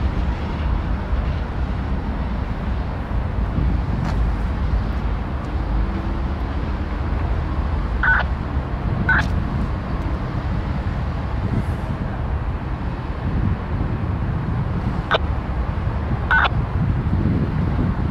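Freight train of boxcars rolling slowly away around a curve: a steady low rumble, with a few brief high metallic squeaks from the cars, two about eight and nine seconds in and two more near the end.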